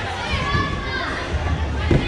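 Children talking and calling out, with one dull thump near the end as a boy lands on a thick padded gym mat.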